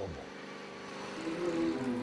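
Pontiac Firebird Trans Am's V8 engine held at steady high revs during a burnout, the rear tyres spinning on the asphalt.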